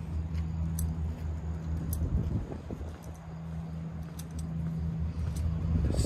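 A vehicle engine idling with a steady low hum that drops away for about a second near the two-second mark, with a few faint clicks over it.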